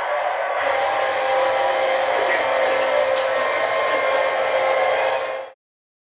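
Air hockey table's blower fan running steadily, a hum with a whine in it, with one sharp click about three seconds in. It cuts off suddenly near the end.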